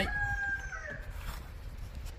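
A rooster crowing: one long, held call that fades out about a second in.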